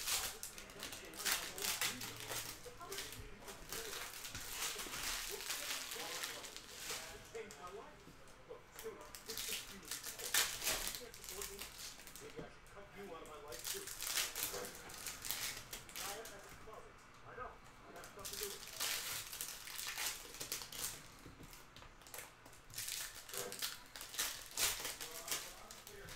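Foil packs of O-Pee-Chee Platinum hockey cards being torn open and crinkled by hand, with the cards rustling as they are slid out: fairly quiet, irregular crackles and rustles.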